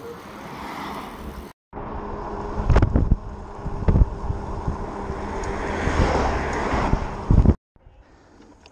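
Electric bike being ridden: wind rush and tyre noise on the head-mounted microphone, with a faint steady whine from the bike's electric motor. Several sharp thumps of wind buffeting come between about halfway and near the end, and the sound drops out briefly twice.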